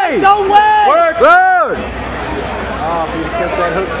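Loud yells from a ringside spectator close to the microphone: a few quick shouts, each rising and falling in pitch, in the first second and a half. They give way to fainter crowd hubbub with one more distant shout.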